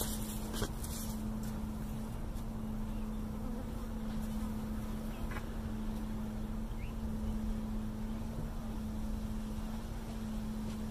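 Honey bees from an opened package of about three pounds of bees buzzing together in one steady drone.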